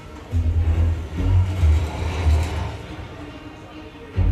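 A film soundtrack played back through an Ascendo 7.2.4 Atmos home theater system, with subwoofers. Deep bass rumble comes in surges for the first two and a half seconds, then drops to a quieter stretch.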